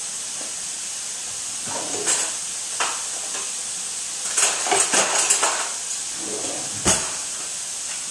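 Mushrooms sizzling steadily in a pan on the stove, with metal forks clinking as they are fetched: a few single clinks, a cluster of rattles about halfway through, and one sharp knock near the end.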